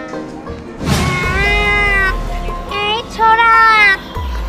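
A whoosh sound effect about a second in, then two long, bending meow-like wails over a low musical drone.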